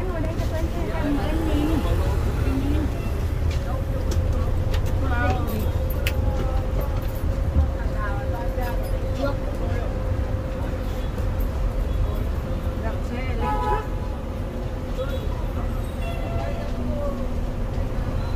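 Coach bus engine running with a steady low rumble, heard from inside the cabin as the bus pulls out and drives along the road. Voices early on, and a short horn toot about two-thirds of the way through.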